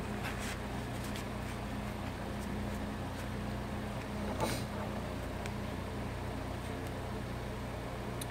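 Pages and tags of a handmade paper junk journal being handled and turned, with a few soft paper rustles, the clearest about halfway through, over a steady low hum.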